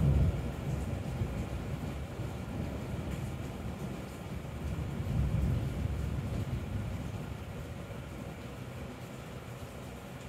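Thunder rumbling low and long, swelling again about five seconds in and then fading away toward the end.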